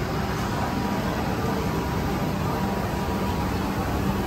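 Steady low rumble and hiss of food-court ambience, as from fans and ventilation running, with no single clear event.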